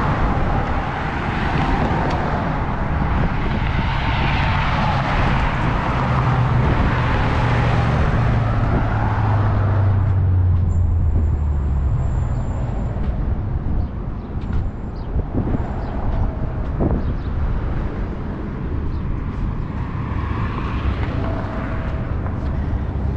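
Road traffic passing close by on a highway. The loudest vehicle goes by in the first ten seconds, its engine note falling in pitch as it passes. After that it is quieter, and another vehicle approaches near the end.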